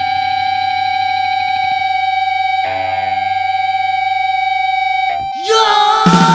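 Distorted electric guitar holding a steady feedback drone in a hardcore punk recording; it cuts off abruptly about five seconds in, and the full band crashes in with drums.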